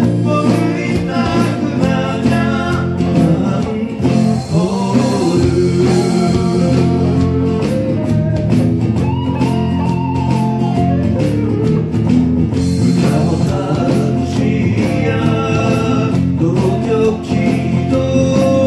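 Small home-recorded band of acoustic guitar, electric bass, electric guitar and electronic keyboard playing a Japanese popular song together, with a man singing the melody. The melody notes slide and waver in places.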